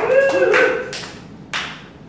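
A small audience calling out and laughing in answer, with scattered handclaps. Two more single sharp claps follow, about a second in and half a second later.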